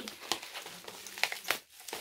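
Packaging being handled and unwrapped: light rustling and crinkling with a few short crackles and taps, the loudest about a second and a half in.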